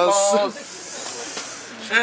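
A man's drawn-out, sing-song greeting ends in a long hissed 's'. It is followed by a steady hiss of background noise with faint voices under it until talk starts again near the end.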